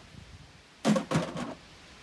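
Plastic cooler box set down on a timber deck: two clunks in quick succession about a second in.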